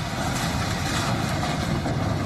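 JCB tracked excavator's diesel engine running steadily as the machine demolishes a brick house.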